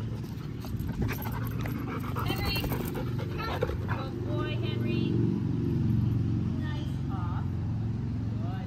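Dogs at play, whining in short high-pitched bursts with some panting, over a steady low hum.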